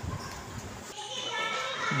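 Faint bleating of goat kids in the background, rising in the second second, over low shuffling and handling noise as a kid is led about.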